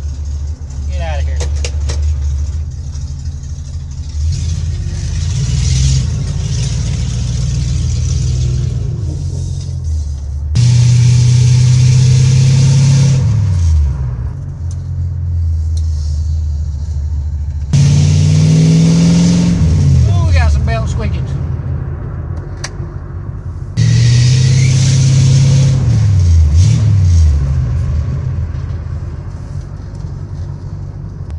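A 1966 Ford Mustang's engine heard from inside the cabin while driving. It gives three loud bursts of throttle, about ten, seventeen and twenty-four seconds in, each lasting a few seconds and ending with the engine pitch dropping away.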